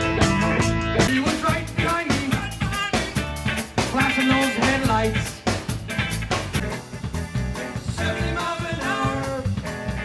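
Jam-band rock music: guitar over a steady drum-kit beat.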